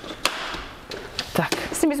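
Doona car-seat stroller being handled and rolled on its small wheels over a wooden floor: several sharp clicks and rattles from its frame, with a stretch of rolling noise in the first second.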